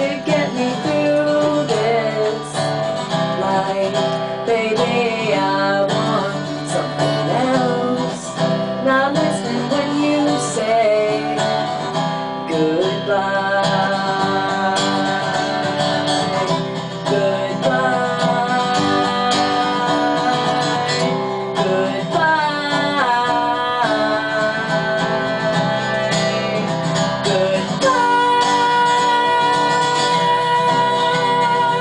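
Acoustic guitar playing an instrumental passage of a song, strummed chords with a wavering melody line over them, steady in level.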